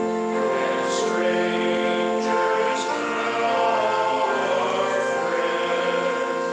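Congregation singing a hymn with sustained accompaniment, held notes changing every second or so.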